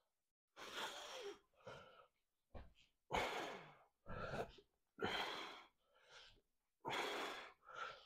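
A man breathing hard through an exercise set. The breaths come in loud pairs, a longer breath and then a shorter one, about every two seconds, in time with pulling against resistance bands.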